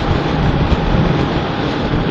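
Steady riding noise of a motorcycle moving along a road: engine running with a continuous rush of wind and road noise on the handlebar-mounted microphone.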